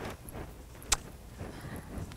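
Quiet room tone with one sharp click about a second in.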